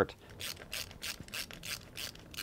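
Hand screwdriver turning a machine screw into a heat-set brass insert in a 3D-printed plastic part: a quiet series of short scratchy clicks, about three a second, starting about half a second in.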